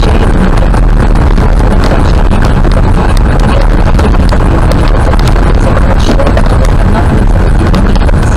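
Car tyres rumbling over a gravel road, with many sharp clicks of loose stones flicking against the underside of the car.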